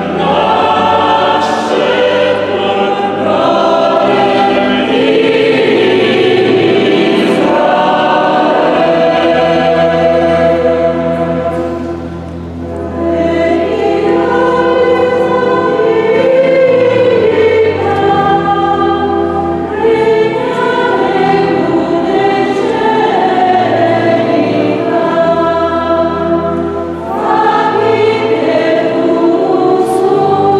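A mixed church choir of women's and men's voices sings a hymn in several parts under a conductor, with the echo of a large church. The singing dips briefly twice, at phrase breaks about twelve seconds in and near the end.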